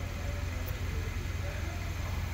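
Steady low droning hum with faint voices in the background.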